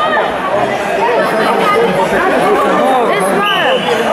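Crowd chatter in a large hall: many overlapping voices of spectators and coaches talking and calling at once, with a high, steady held tone starting near the end.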